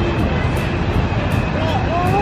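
Wind buffeting the microphone outdoors: a steady, low, fluttering rumble with no single strike in it.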